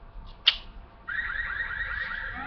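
A sharp click about half a second in, then, from about a second in, a steady electronic alarm-like tone that turns into repeated rising sweeps.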